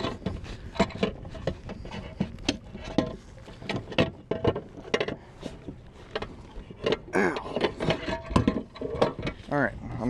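Repeated knocks, clicks and rattles of gear being handled in a plastic fishing kayak, with a brief stretch of voice about seven seconds in.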